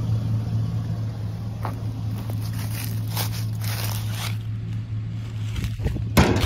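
Footsteps scuffing on asphalt, with rustling of clothing and the handheld phone, over a steady low engine hum that stops shortly before the end.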